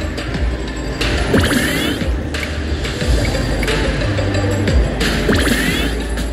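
Money Link slot machine's bonus-round electronic music and reel-spin sound effects, as two free spins of the hold-and-spin feature play out. There are two rising chime sweeps, about four seconds apart.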